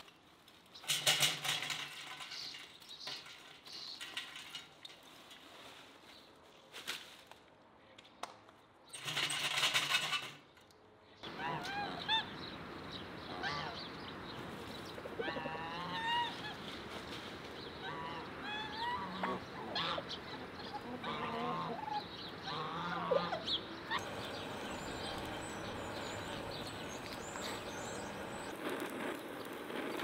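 Lumpwood charcoal poured from a bag into a metal mangal in two noisy bursts, followed by farmyard poultry (geese, turkeys and chickens) calling over and over in short wavering calls. Near the end a steady hiss takes over as a gas torch flame lights the fire.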